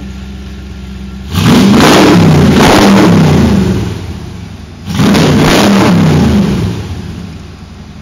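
Factory Five Cobra roadster's fuel-injected 5.0-litre Ford V8, breathing through headers and ceramic-coated side pipes, idling and then revved hard twice. The first rev starts about a second in and the second about five seconds in, each held for about two seconds before falling back to idle.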